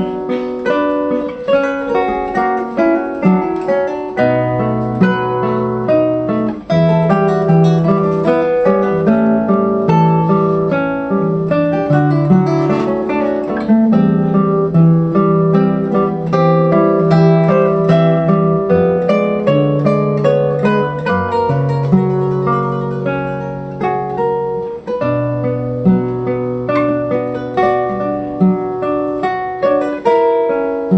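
Two classical guitars, a 1988 Alberto Nejime Ohno and a 2011 Sakae Ishii, playing a duet: a continuous stream of plucked, arpeggiated notes over held bass notes.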